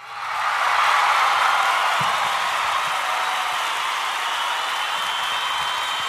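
Crowd applauding and cheering, coming in abruptly and then holding steady.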